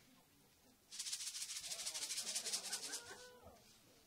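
A percussion shaker shaken rapidly in an even pulse for about two seconds, starting about a second in and stopping abruptly, with faint talk underneath.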